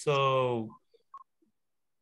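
A man's drawn-out hesitation sound, an 'uh' falling in pitch, heard over a video call. It cuts off within the first second and is followed by near silence with a few faint short blips.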